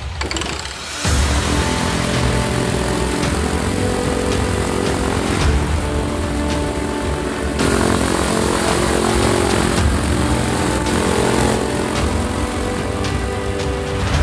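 Music mixed with the engine and propeller of a PAL-V flying car running on the ground during a taxi test. The sound comes in fully about a second in and holds steady.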